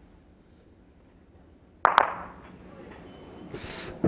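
Lawn bowls knocking together in the head: two sharp clacks a fraction of a second apart, about halfway in, after near silence. A short rush of noise follows near the end.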